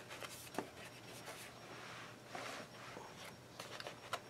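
Faint rustling and rubbing of paper as hands handle the open pages of a paperback coloring book, with a few light taps.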